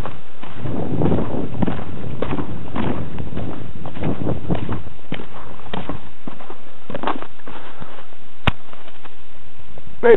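Footsteps crunching through snow at a steady walking pace, about two steps a second, easing off about three-quarters of the way through. A single sharp click near the end.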